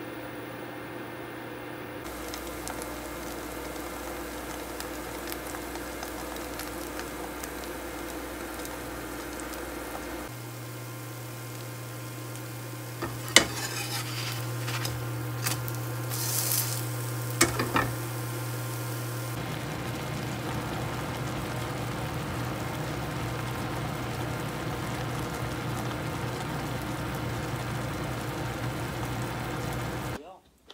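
Tofu pancake frying in oil in a nonstick pan, a steady sizzle. Between about 13 and 18 seconds in, a metal slotted turner scrapes and clicks against the pan as the pancake is turned.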